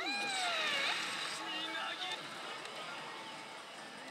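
Pachislot machine sound from a 押忍!番長ZERO: a drawn-out, swooping character-voice effect in the first second or so, then fainter machine music and jingles over the steady din of a slot parlour.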